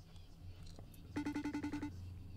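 A phone call ringing on speaker while waiting for an answer: a short burst of rapidly pulsed ringing tones, about nine pulses a second, starting a little past one second in.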